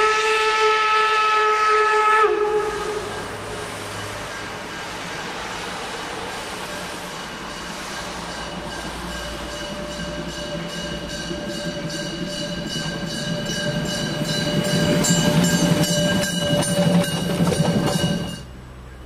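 Narrow-gauge steam locomotive's whistle blowing one loud chord-like blast that stops about two seconds in. Then the train draws near at work behind a snowplough car, with regular exhaust beats and a fainter steady tone, growing louder towards the end as it passes.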